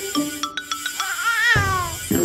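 Cartoon background music with short plucked notes, then a wavering cartoon vocal call that rises and then slides down in pitch over the last second.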